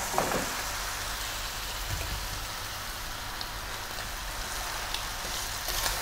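Boiled pork trotters sizzling in a hot pan of sautéed tomato, onion and garlic as they are stirred with a wooden spoon: a steady hiss with a few light knocks.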